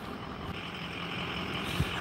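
Low outdoor background noise of road traffic, a steady hiss and rumble that grows slightly louder.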